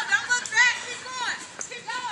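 Children's high-pitched shouts and calls, several short ones in a row, during a footrace.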